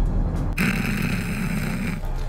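Horror film soundtrack: a loud, low rumbling drone, joined about half a second in by a denser, harsher swell that holds to the end.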